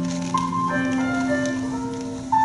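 Instrumental music on a keyboard instrument: slow, sustained chords of steady held notes that change about once a second.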